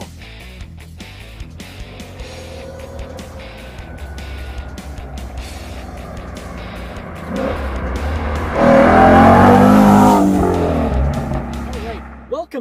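Background music with a steady low beat, joined by a car engine revving up to a loud peak about eight seconds in and easing off before the end.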